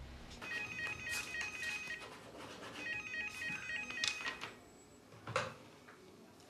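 Desk telephone ringing with an electronic warbling trill, two rings. A short knock follows near the end as the handset is picked up.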